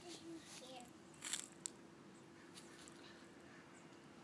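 Quiet garden scene with one brief rustling crunch about a second in, followed by a small click: weeds being pulled from the soil by hand.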